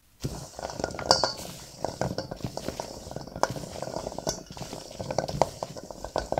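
Chocolate-coated cookie balls rolling and knocking against a stainless steel bowl as they are tossed in cocoa powder. The sound is a dense, irregular clatter of small clicks that starts suddenly just after the beginning.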